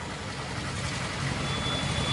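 Steady low rumble and hiss of outdoor background noise during a pause in a public-address speech, with a faint high steady whine coming in near the end.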